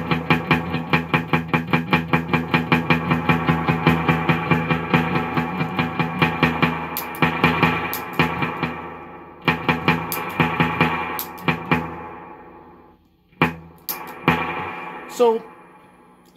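Electric guitar played through a Vox AC15CH amp's spring reverb: a fast, even stream of picked notes while the reverb mix is being turned down on a Drip Switch pedal, from a big wash towards much less. The playing stops about twelve seconds in, and a few single notes follow near the end.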